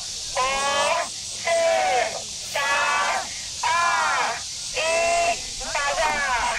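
A crowd of students chanting a launch countdown in unison, one count about every second.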